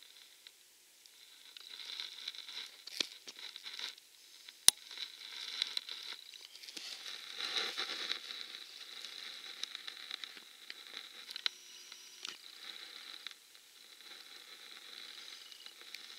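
Rustling and crinkling handling noise close to the microphone, swelling and fading, with a few sharp clicks; the loudest click comes a little under five seconds in.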